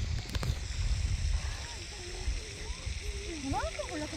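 Low, uneven rumble of wind on the microphone, strongest in the first second and a half, with a brief click near the start and faint distant voices toward the end.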